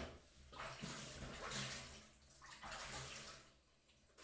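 Faint water running, likely from a kitchen tap, in two short spells.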